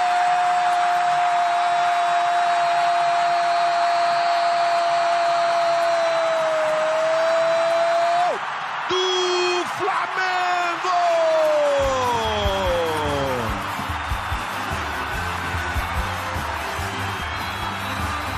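A football commentator's long held goal cry, one drawn-out 'Gol!' on a steady pitch over the stadium crowd's noise, breaking off about eight seconds in. A few falling sliding tones follow, then music with a heavy deep beat.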